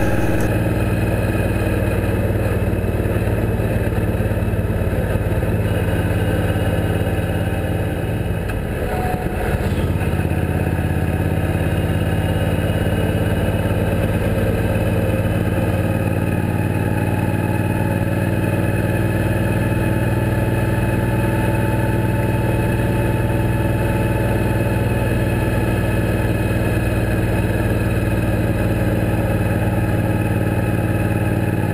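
Suzuki Boulevard C90T cruiser's V-twin engine running steadily while riding at highway speed, heard from a handlebar-mounted camera. The note dips briefly about nine seconds in, then steadies again.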